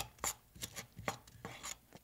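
A wooden spoon stirring and scraping diced shallots around a nonstick skillet as they sauté: a quick, irregular run of soft scrapes and taps.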